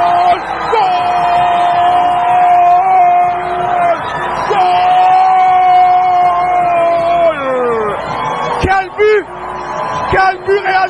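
A football commentator's long, held goal shout: two sustained high notes, the second sliding down in pitch near the end, then a couple of short excited cries, over crowd noise.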